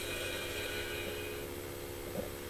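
The held closing chord of a TV news ident jingle, slowly fading.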